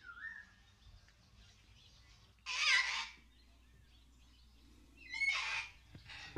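Animal calls: a brief pitched call at the start, then two loud, harsh calls of about half a second each, one near the middle and one near the end, over a faint steady low hum.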